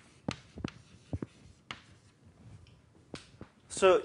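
Chalk writing on a blackboard: a handful of sharp, uneven taps and short scratches as a word is chalked up. A man's voice begins just before the end.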